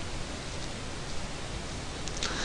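Steady hiss of the recording's background noise, with no speech.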